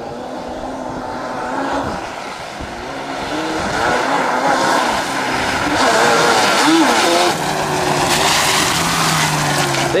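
Quad ATV engine revving as the quad drives through mud, its pitch rising and falling with the throttle and growing louder as it approaches.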